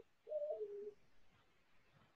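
A faint bird call: one short coo about a quarter second in, a higher note stepping down to a lower held one.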